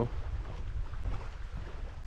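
Low, steady wind rumble on the camera's microphone.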